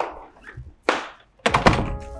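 An interior wooden door being opened and shut: three sudden knocks, the last and loudest about a second and a half in as the door closes.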